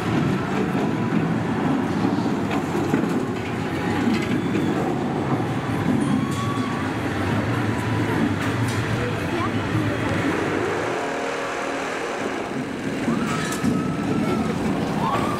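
Outdoor theme-park ambience: a steady low rumble, with the chatter of passing visitors on top. The rumble fits a roller coaster running on its steel track, and it carries a thin steady whine near the end.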